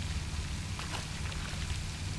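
Steady, even hiss of falling water like light rain, over a low rumble.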